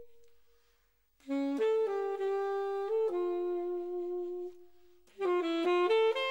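Unaccompanied alto saxophone playing a slow, lyrical melody. A held note fades out, and after a brief pause comes a phrase of long sustained notes. Near the end it breaks into a quick run of notes.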